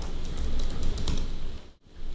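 Computer keyboard typing: a rapid run of keystrokes that breaks off briefly near the end.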